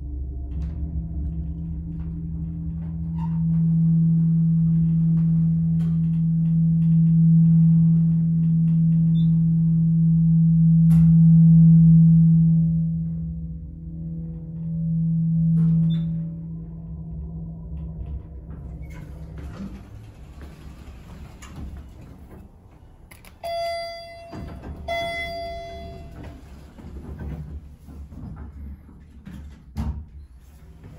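1973 Dover hydraulic elevator running upward, with a loud, steady low hum from the hydraulic pump drive that fades after about eighteen seconds as the car slows and stops. Near the end come two chime tones about a second and a half apart, signalling arrival at the floor.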